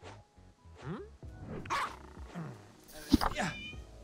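A voice giving several short, cartoon-style cries with sliding pitch, spaced under a second apart, the loudest about three seconds in, over faint music.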